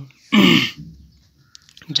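A man clearing his throat once, a short loud burst lasting about half a second.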